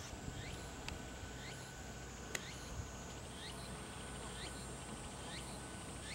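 A bird chirping repeatedly, short curved chirps about twice a second, over steady outdoor ambience. A sharp click comes a little under a second in, and a louder one a little past two seconds in.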